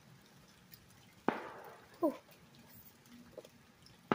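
A single distant firework bang a little over a second in, trailing off over about half a second.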